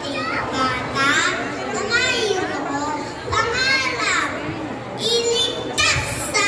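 A young boy's high voice speaking expressively into a stage microphone, amplified through loudspeakers, in short phrases with pauses.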